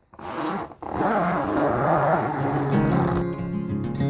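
A grow tent's fabric door zipper pulled open with a long rasp. Strummed acoustic guitar music comes in about three seconds in.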